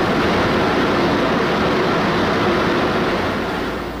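Underground mining machinery running: a loud, steady hissing rumble with no break or rhythm.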